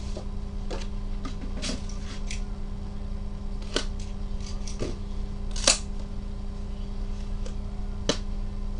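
Gloved hands handling cardboard Panini National Treasures trading-card boxes: a scatter of short clicks and taps, the loudest about two thirds of the way through, over a steady low hum.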